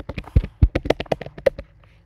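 Computer keyboard typing: a quick run of about fifteen keystrokes, roughly nine a second, stopping about one and a half seconds in.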